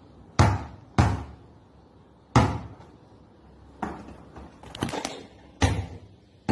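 A basketball bouncing on a hard indoor floor: about six sharp thuds at uneven intervals, each with a short ringing tail.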